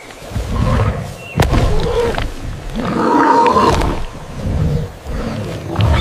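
Sound-designed roars of giant pterosaurs: several deep swelling calls, the loudest about halfway through, with a sharp crack about a second and a half in.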